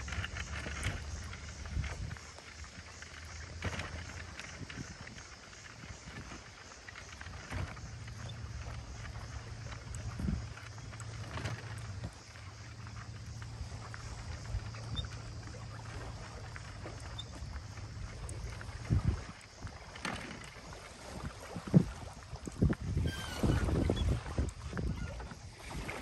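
C-Tug kayak cart's wheels rolling over a concrete boat ramp, a steady low rumble with scattered knocks. A cluster of louder knocks and bumps comes near the end, as the kayak is handled at the water's edge.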